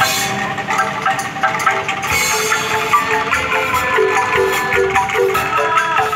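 A street angklung ensemble playing: bamboo angklung shaken on a rack, with mallet-struck xylophones carrying a busy melody of quick repeated notes over percussion.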